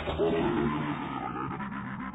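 Heavily effected, pitch-shifted logo soundtrack: a dense, continuous, low-pitched sound with no clear words or melody.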